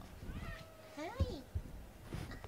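Domestic cat meowing: a short call about half a second in, then a longer meow that rises and falls in pitch just after a second.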